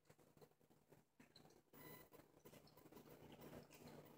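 Near silence, with faint soft mouth clicks of a person chewing a bite of burger that come more often in the second half.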